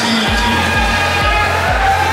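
Pop song playing with a steady bass-drum beat of about two thumps a second under a sung melody.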